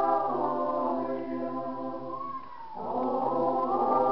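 Small mixed choir singing a Lithuanian song, holding long notes. The singing thins out and dips briefly about two and a half seconds in, between phrases, then comes back in full.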